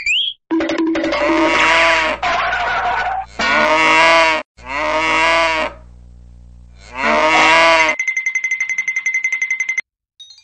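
Cows mooing: five long, drawn-out moos in quick succession, the last about seven seconds in. After the last moo, a steady high tone pulses rapidly for about two seconds.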